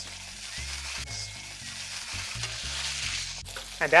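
Sesame-crusted ahi tuna searing in hot oil in a pan, a steady sizzle as it is held on its edge with tongs.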